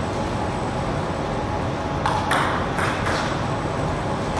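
Table tennis ball bouncing three or four times, about half a second apart, over a steady low hall hum.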